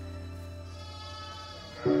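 Background music: soft held notes, then a louder held chord swelling in near the end.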